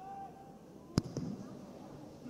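A football kicked once, a sharp thud about a second in, followed by a fainter knock.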